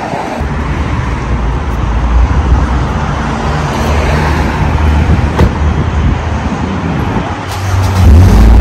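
Steady low rumble of road traffic, with a single sharp click about five and a half seconds in.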